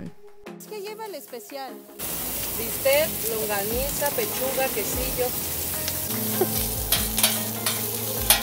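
Food frying on a large flat steel griddle, a steady sizzle that comes in suddenly about two seconds in. Near the end, metal spatulas click and scrape on the griddle as the meats are turned.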